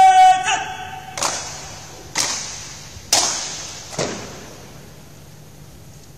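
A drill command shouted with a long held final syllable ends just after the start. It is followed by four sharp, crisp slaps about a second apart, each trailing off in reverberation: the honour guard's rifle-drill movements done in unison as the guard presents arms.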